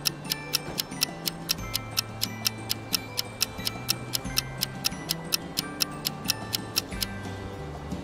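Countdown-timer ticking sound effect, even ticks at about four a second, over soft background music with held low notes.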